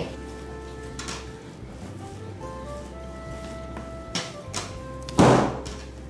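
Soft background music of held notes, with a few thuds of bread dough being slapped down onto the work surface as it is kneaded; the loudest thud comes about five seconds in.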